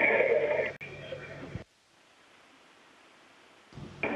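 The live audio feed carries a steady hum that drops away about half a second in, then cuts to near silence for about two seconds before the sound comes back just before the end.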